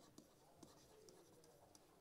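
Very faint scratching and light ticks of a stylus writing words by hand on a digital writing surface, over a low steady hum.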